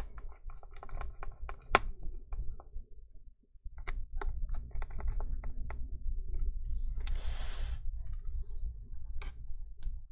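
Small, irregular clicks and taps of a T5 precision screwdriver and tiny screws against a laptop's aluminium chassis and hinge brackets as the display hinge screws are driven in. A brief rustle comes about seven seconds in.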